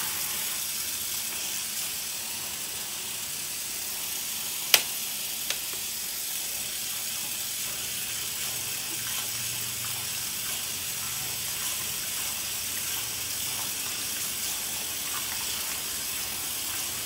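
Tap water running steadily into a sink while lash tools and a brush are rinsed under the stream. A sharp click a little under five seconds in, and a fainter one just after.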